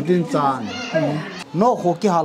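People's voices talking, with pitch rising and falling; nothing else stands out above the voices.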